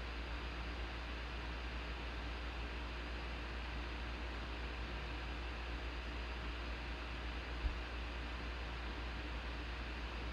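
Steady background hiss with a low hum underneath, open-microphone room noise while nothing else happens; a single brief low thump about three quarters of the way through.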